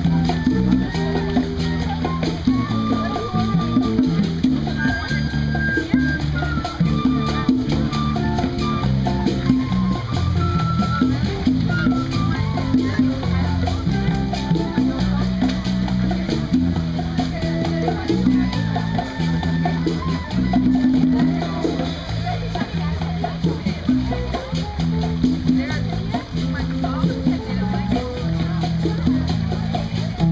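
Live band playing amplified music with conga drums, a moving bass line and short melodic lines over it.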